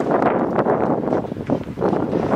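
Wind buffeting the camera microphone: a loud, gusting rumble that rises and falls, with a couple of short knocks near the end.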